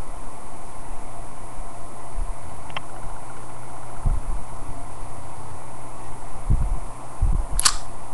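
Steady hiss and low hum of a webcam microphone, broken by a few dull low thumps as the handheld iPod Touch is handled and tapped. A sharp click comes near the end.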